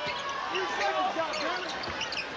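Basketball dribbled on a hardwood court, with a couple of ball knocks and many short sneaker squeaks as players cut, over steady arena crowd noise.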